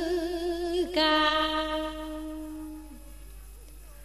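Background music with a solo voice singing a long, wavering held note. About a second in, a second, steadier note begins, then fades away by about three seconds.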